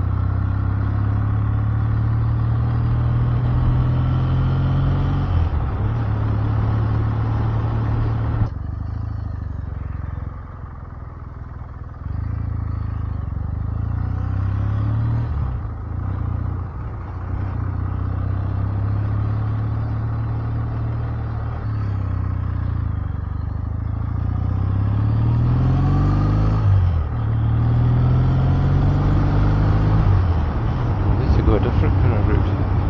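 Kawasaki W650 parallel-twin motorcycle engine running while riding, heard from the bike itself. It eases off and goes quieter about eight seconds in, picks up again, and climbs in revs with a brief gear-change dip near the end.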